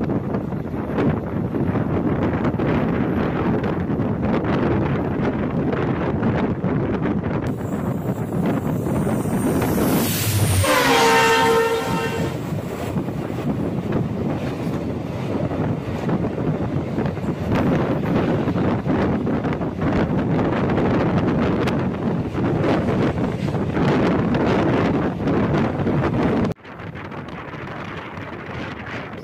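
Running noise of a passenger train heard from an open coach doorway: steady rumble, wheel-on-rail clatter and wind on the microphone. About ten seconds in, a locomotive horn sounds for about two seconds, its pitch falling as it passes. The sound changes abruptly twice where clips are cut together.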